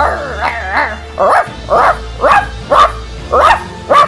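A dog barking in a quick run of about six barks, roughly half a second apart, over background music.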